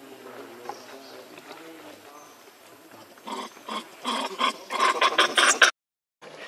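Infant macaque whimpering softly, then, about three seconds in, screaming in distress in a rapid run of loud cries, about four or five a second, that cuts off suddenly just before the end.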